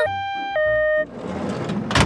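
Background children's music with steady held notes, then a cartoon whooshing vehicle sound effect of an ambulance submarine arriving. The whoosh starts about a second in, grows louder, and ends in a sharp hit near the end.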